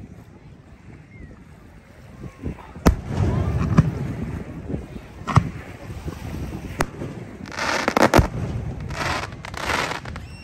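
Aerial fireworks shells bursting overhead: a series of sharp bangs, the first about three seconds in and the last in a cluster near eight seconds, over a low rumble.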